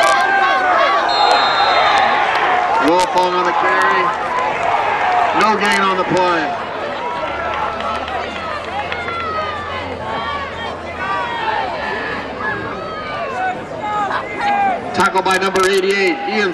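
Football stadium crowd chatter: many voices talking and calling out at once, with a few sharp claps or clicks near the end.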